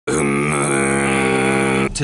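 A person's voice holding one long, low, steady vocal note, which cuts off suddenly near the end.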